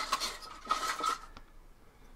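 A clear plastic bag holding a plastic model kit's parts trees crinkling and rustling as it is handled, the noise dying down after about a second and a half.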